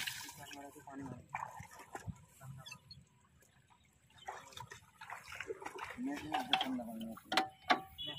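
Men's voices talking over water sloshing and splashing as feet wade through a flooded, muddy paddy. Near the end come two sharp knocks, the loudest sounds here.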